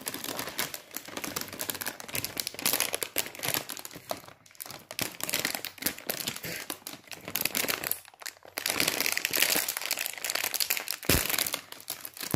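A Parle Wafers Piri Piri snack packet crinkling and rustling as hands struggle to tear it open, with short lulls about four and eight seconds in.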